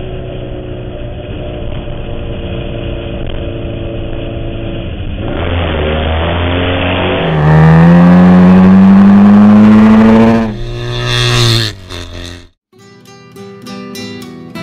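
1979 Kawasaki KZ750 parallel-twin engine breathing through an open header, running at steady speed on the road. It then accelerates with a rising pitch and gets much louder from about halfway. A second short run-up in revs follows before the engine sound cuts off, and acoustic guitar music begins near the end.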